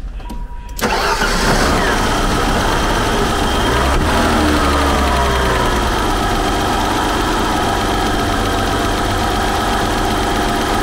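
BMW 528e's 2.7-litre M20 inline-six starting up about a second in, on freshly rebuilt fuel injectors. Its pitch shifts for a few seconds, then it settles into a steady idle.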